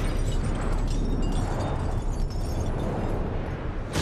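Slow-motion sound effect of a target plate shattering: a long, deep rumble with scattered tinkling of shards, ending in a sharp hit.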